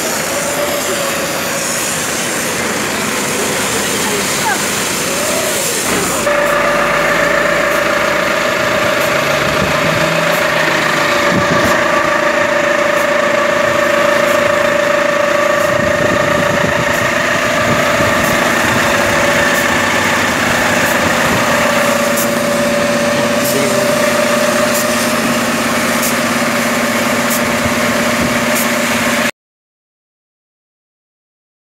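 A truck's engine running steadily with a steady whine over it, under people's voices and shouting. The sound cuts off abruptly near the end.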